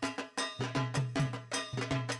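Drumming in a fast, even rhythm, about four strokes a second, each with a deep decaying note and a bright metallic clink on top.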